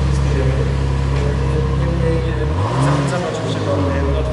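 Car engine idling steadily, then revved once about two and a half seconds in, its pitch rising and falling back to idle near the end.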